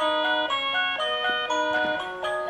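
Tinny electronic chime melody played by a musical Christmas village decoration with a toy train circling its track, one note after another at an even pace.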